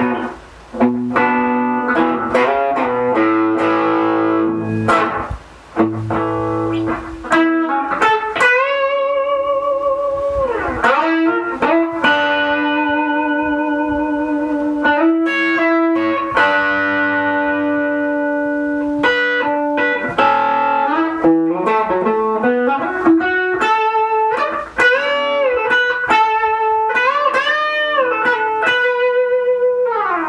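A Les Paul-style solid-body electric guitar with a Bigsby vibrato playing a melodic lead line: picked single notes, many held for a second or more, with bends and vibrato on the long notes about a third of the way in and again near the end.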